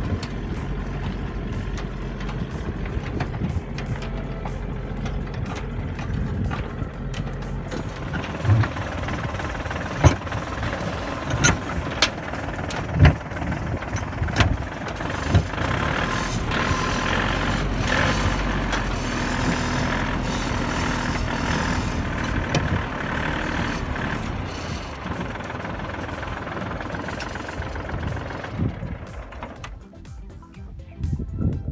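Small Kubota tractor's diesel engine running steadily as it pulls along a field, with scattered sharp knocks and rattles through the middle, as of the laden cart bouncing.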